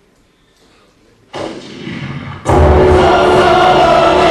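Loud music with a group of voices singing in chorus, holding long notes; it comes in abruptly about two and a half seconds in, after a quieter lead-in of about a second.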